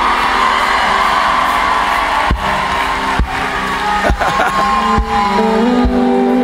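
Worship band music: sustained keyboard chords over a steady beat about once a second, with a crowd cheering and whooping.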